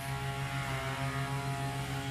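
An engine running at a steady idle, an even, unchanging drone.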